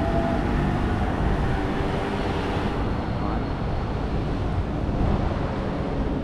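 Road traffic at a wide crossroads: a steady mix of passing vehicles' engines and tyre noise with a strong low rumble.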